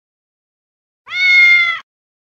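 A single cat meow, about three-quarters of a second long, at a nearly steady pitch. It comes in about a second in and cuts off sharply, against complete silence.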